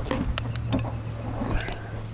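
Light footsteps and rustling on straw mulch, a few scattered clicks over a low steady hum.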